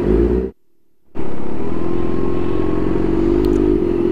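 Kawasaki Ninja H2's supercharged inline-four running at a steady low engine speed in slow traffic, heard from on the bike. The sound cuts out for about half a second near the start, then the engine note returns unchanged.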